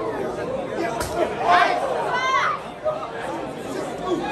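Spectators at a live wrestling match chattering, with individual shouts, and a single sharp smack about a second in.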